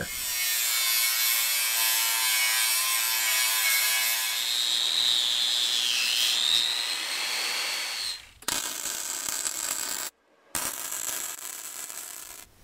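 Electric angle grinder scoring steel tubing, cutting a groove along a small crack beside an old weld so the repair weld can penetrate; its high whine dips in pitch briefly about six seconds in. Then, after an edit, a wire-feed welder crackles in two short runs with a brief silence between them.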